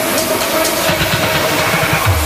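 Tech house DJ mix in a breakdown: the deep kick and bass drop out, leaving ticking hi-hats and a held synth note.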